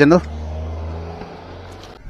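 A motor vehicle's engine hum, low and steady, fading away over about a second and a half.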